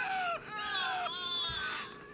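High-pitched wailing cries, like a child crying out: about three long wails, each falling in pitch, fading out near the end.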